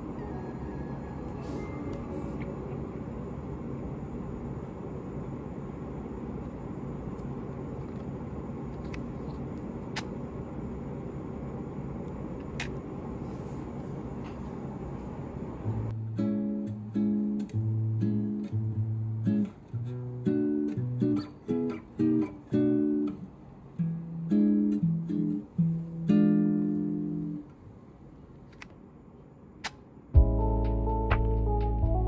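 Background music: a soft, hazy passage, then about halfway through a plucked guitar tune with bass notes comes in.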